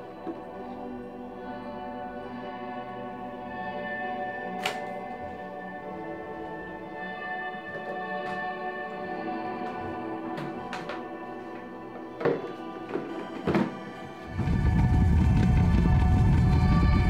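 Background music throughout, with several sharp plastic knocks as a film developing tank and reel are handled at a sink. Near the end a pink plastic salad spinner is spun, a loud low rumbling whir lasting about three seconds.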